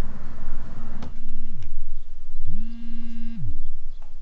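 A second of steady noise ends at a click. Then a smartphone vibrates with an incoming call: two buzzes, a short one and then a longer one, each rising in pitch as the motor spins up and falling as it winds down.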